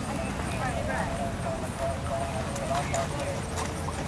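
Soft hoofbeats of a palomino pony trotting in sand arena footing, a few distinct strikes standing out in the second half.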